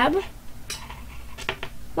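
A few light clicks and clinks of drawing tools being picked up and handled, two of them close together near the end.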